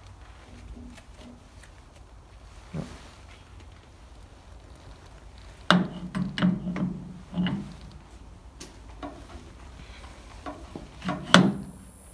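A metal belt pulley and brake drum being worked back onto a lathe spindle by hand: a few scattered metallic clunks and knocks with quiet handling in between, the busiest cluster about halfway through and one more sharp knock near the end.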